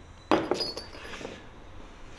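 Metal diamond core bits for an angle grinder clinking against each other as they are handled and set down on a wooden table. A sharp clink about a third of a second in rings briefly, followed by softer handling sounds.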